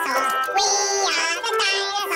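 Children's song: a high sung voice over backing music, with one long held note near the middle.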